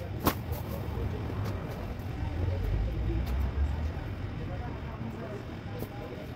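Low rumble of a motor vehicle, swelling about halfway through, with a sharp click just after the start.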